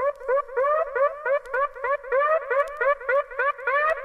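Hard house synth riff of short, upward-gliding stabs, about four a second, playing on its own without kick drum or bass.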